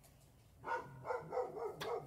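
Dog barking: a few barks begin about two-thirds of a second in, after a brief quiet.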